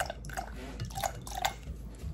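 Quiet kitchen handling at a glass measuring cup: a few soft taps and small liquid drips as vanilla extract is poured into coconut milk and a wire whisk is handled in the cup.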